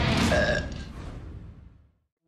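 A loud, drawn-out burp that trails off to silence near the end.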